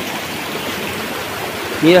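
Shallow river water running over stones, a steady rushing sound.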